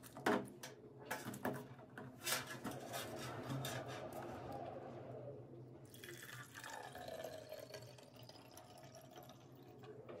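A few sharp plastic knocks as a plastic sieve and jug are handled, then hibiscus tea pouring from a plastic jug into a plastic bottle. Near the end the pouring sound rises in pitch as the bottle fills.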